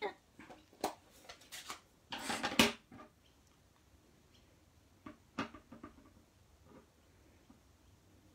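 Small knocks and clicks from handling card stock and a clear acrylic stamp block on a craft table, with a louder scraping rustle about two seconds in and a sharp tap a little after five seconds.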